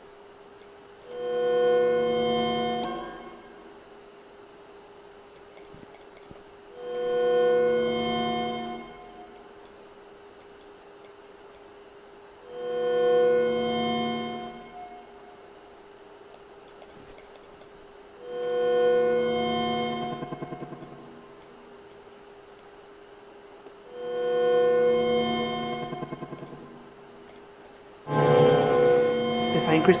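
Granular synthesis from netMUSE: a pitched, many-overtoned tone swells in and fades away five times, about every six seconds and about two seconds each, as the sequencer's wavefront reaches the grains and sets them playing. A faint steady tone holds underneath. About two seconds before the end, a denser, louder run of grains begins.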